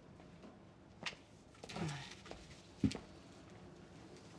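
Quiet room with a few soft knocks, the loudest just before three seconds in, and a brief faint murmur near the middle.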